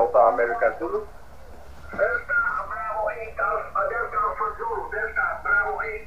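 A ham radio operator's voice on the 20 m band, played through a small receiver's speaker. It sounds thin and band-limited, like single-sideband speech, with a pause of about a second near the start.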